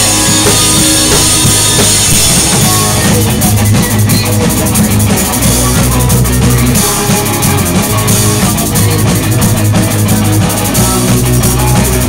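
Pop-punk band playing live and loud: a full drum kit driving the beat under electric guitars.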